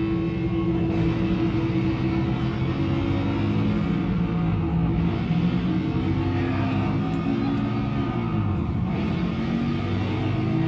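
Heavy metal band playing live: electric guitar and bass over drums, running continuously.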